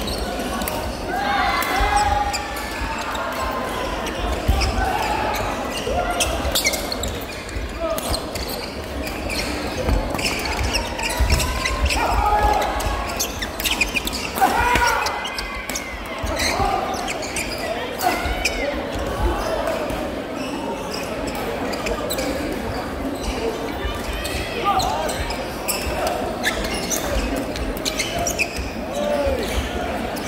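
Badminton doubles in a sports hall: many sharp racket strikes on the shuttlecock and short shoe squeaks on the court floor. Background voices murmur under them, and the hall echoes.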